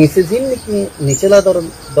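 A man speaking in Rohingya with pauses between phrases, and a steady high-pitched tone running faintly underneath.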